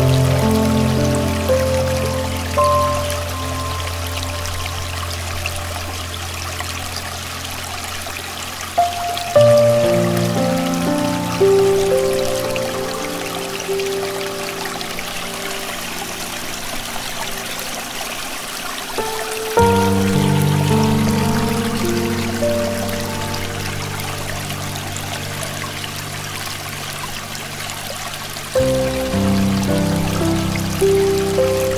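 Slow, soft piano music: held chords and a few melody notes, with a new phrase struck about every ten seconds and left to ring out. Under it is a steady hiss of running stream water.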